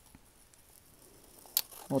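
Scissors cutting a strip of paper: faint handling of the paper, then one short crisp snip about one and a half seconds in.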